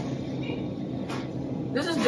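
Steady electrical hum of grocery store refrigerated display cases, with one brief noise about a second in.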